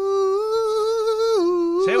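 A man humming a slow tune in a high voice, holding long notes with a slight waver, dropping to a lower note about one and a half seconds in.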